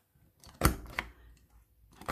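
Handheld paper hole punch pressed down through a sheet of watercolour paper: two sharp clicks about a third of a second apart, the first louder.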